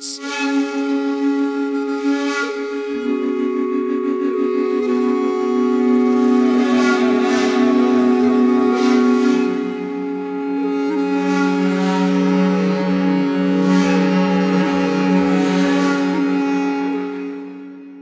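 Sampled woodwind ensemble of shakuhachi, clarinet and baritone saxophone from the LORES virtual instrument, playing a slow chord of sustained, layered notes with breathy swells. Lower notes enter a few seconds in and again about halfway through, and the sound fades out near the end.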